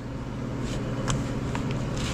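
Steady low mechanical hum of workshop machinery, with a few faint clicks as metal turbocharger parts are handled on the bench.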